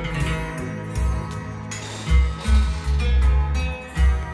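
A song with guitar playing through a pair of Bang & Olufsen Beovox M150 floor-standing loudspeakers. Deep bass notes come in strongly about halfway through.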